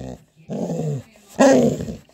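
Pet dog making two short, throaty growl-like vocalisations, the second louder: attention-seeking 'talking' to its owner rather than aggression.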